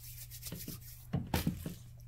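A few short knocks and handling sounds a little past a second in, as a Beaker Creatures fizzing pod is put into a plastic bowl of water, over a steady low hum.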